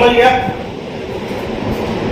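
A steady low rumble of background noise, after one short spoken word at the start.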